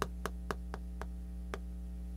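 Chalk striking and clicking against a chalkboard while writing, short dry clicks about four times a second, over a steady low hum.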